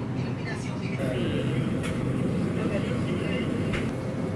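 Shop ambience inside a deli: a steady low hum and rumble under indistinct background voices, with two light clicks, about two seconds in and near the end.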